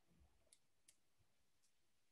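Near silence on a video-call line, with two faint short clicks.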